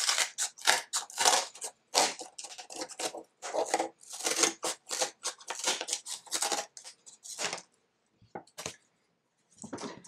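Scissors cutting through cardboard: a run of rough, irregular snips and crunches as the blades chew along a long strip, stopping about seven and a half seconds in, followed by a few faint light taps.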